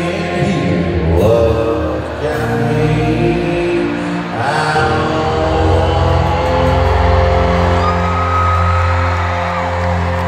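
A live country band with a male singer and acoustic guitar, heard through an arena's sound system. In the second half the music settles into long held notes.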